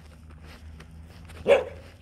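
A Border Collie barks once, a single short bark about one and a half seconds in.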